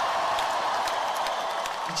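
A large concert crowd cheering and applauding in a live recording, a steady wash of noise with no speech over it.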